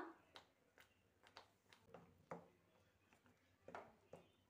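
Near silence, with a few faint scattered ticks and taps from a spatula stirring thick tomato pickle paste in a steel pan.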